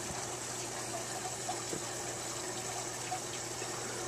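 Aquarium filter and air bubbler running: a steady rush of bubbling water over a constant low hum.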